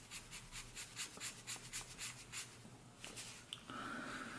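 Pen tip scratching across a brown paper bag in quick back-and-forth hatching strokes, about four or five a second, stopping around three seconds in. A faint steady tone starts near the end.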